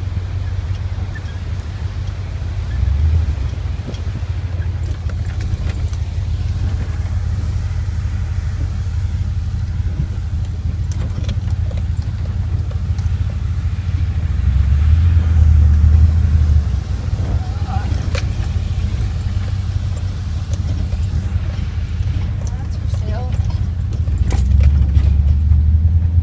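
Car heard from inside the cabin, driving slowly along a rough dirt road: a steady low rumble of engine and tyres that swells now and then, with occasional knocks and rattles from the bumps.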